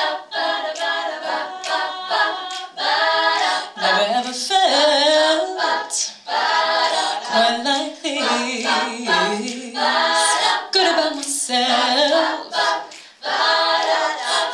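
An all-female a cappella group singing in harmony, several voices together without instruments, phrase after phrase with short breaths between.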